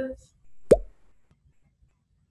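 A single sharp pop, its pitch dropping quickly, under a second in, followed by faint scratching of a pencil on paper.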